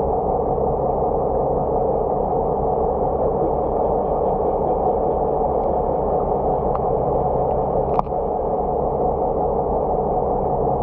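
Steady, muffled underwater rumble with a faint low hum, picked up through a camera under the water. A single sharp click comes about eight seconds in.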